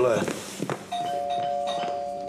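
Two-tone doorbell chime, a higher note followed by a lower one (ding-dong), ringing out about a second in.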